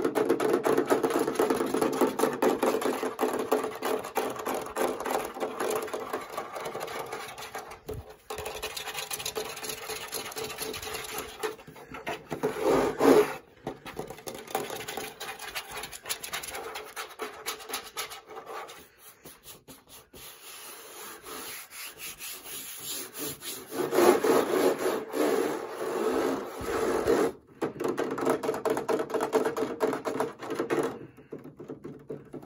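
Fast scratching and tapping on the casing of a fan: a dense run of quick strokes. It goes softer past the middle and picks up again near the end, with a few brief pauses.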